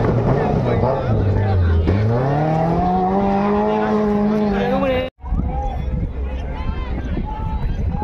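Maruti Gypsy's engine revving hard under load in the dirt: its pitch sags, then climbs steadily for a couple of seconds and holds high as the off-roader accelerates away, until the sound cuts off abruptly about five seconds in. After that come shouting onlookers over a low rumble.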